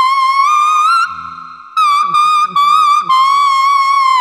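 Small plastic toy whistle blown as a tune: one high tone that wavers slightly in pitch, breaking off for under a second about a second in, then carrying on.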